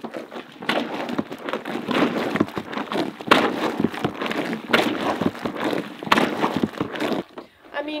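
Water sloshing and churning as the Lavario portable washer's perforated plastic basket is plunged up and down through soapy water and clothes in its bucket, with sharp plastic knocks about every one and a half seconds. It stops about seven seconds in.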